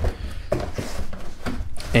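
Cardboard pizza box being handled and its lid opened, a rustle of cardboard with a few soft knocks starting about half a second in.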